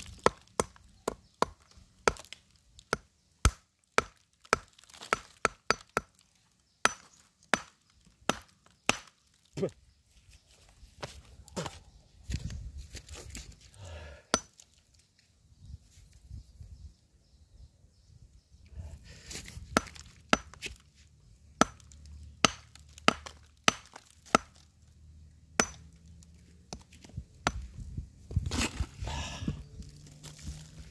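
Hammer striking a stone boulder: a series of sharp, separate blows, about two a second, that thin out to a pause around the middle and then resume.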